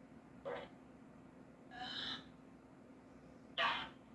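Spirit box sweeping radio stations: three short bursts of static and garbled radio sound, about half a second, two seconds and three and a half seconds in, over a faint steady hum.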